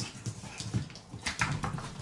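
Shiba Inu puppy making small vocal noises while playing, with a cluster of sharp clicks from its claws on the hard floor about one and a half seconds in.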